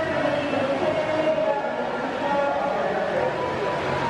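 Indistinct voices over a steady held droning tone, running on without a break.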